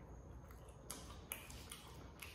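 Faint mouth sounds of someone eating chicken wings: a few soft, sharp clicks and smacks of chewing, mostly in the second half.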